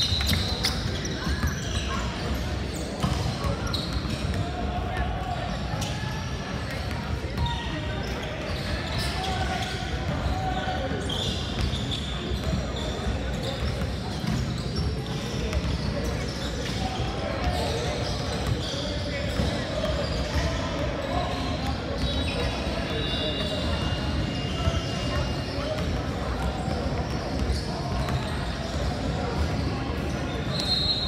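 Echoing din of a large gym hall: indistinct voices, with basketballs bouncing on the hardwood floor.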